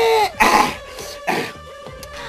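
A man's drawn-out vocalised exclamation ending, followed by two short breathy bursts of laughter.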